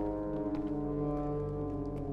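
Dramatic background score of sustained low, horn-like drone chords, with a low pulsing note coming in near the end.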